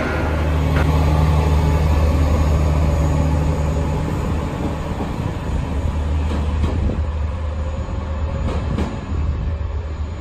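KiHa 40 diesel railcar's engine running as the railcar pulls away: a low, steady drone that eases off after about four seconds, with a few sharp clicks later on.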